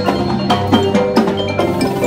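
Drum corps front ensemble playing: marimbas and vibraphones struck with mallets in a quick run of pitched notes, over a sustained low tone.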